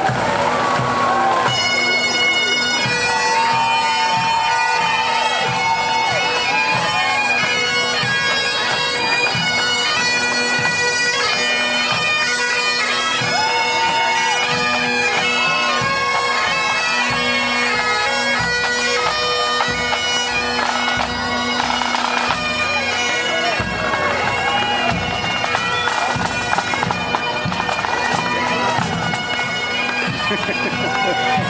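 Pipe band playing on the march: massed Highland bagpipes with a steady drone under the chanter melody, and snare and bass drums keeping the beat.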